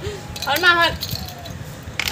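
A brief high-pitched voice sounding about half a second in, its pitch rising then falling, over light metallic jingling.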